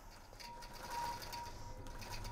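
Long-arm quilting machine stitching a pantograph through a quilt border: a faint, fast, even run of needle strokes over a steady hum from the machine.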